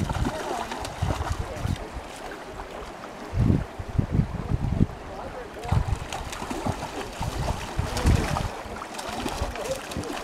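Splashing from a hooked sockeye salmon thrashing at the surface of a fast-flowing river, over the steady rush of the water. Irregular gusts of wind buffet the microphone, with faint voices in the background.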